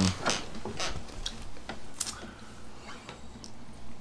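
Irregular light clicks and taps of an acoustic guitar being handled and settled into playing position, before any notes are played.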